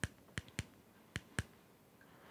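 Rubber keypad buttons of a Baofeng UV-5R handheld radio being pressed: five short, sharp clicks, unevenly spaced, while stepping through the radio's menu settings.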